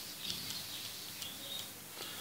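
Faint background hiss with a few faint ticks and scratches from a stylus writing on a pen tablet.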